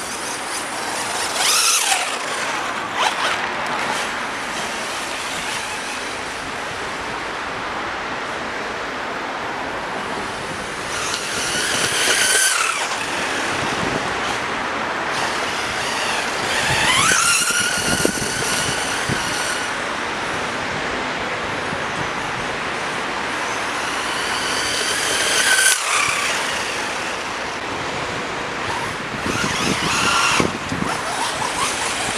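Brushless 1:10 RC buggy (FTX Vantage, 2950kv 540-size brushless motor) driving about, its high motor whine rising and falling in pitch as it speeds up and passes, about four times, over a steady hiss.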